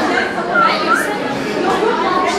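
Audience chatter in a large hall: many voices talking at once. One high voice rises and falls briefly above the rest about halfway through.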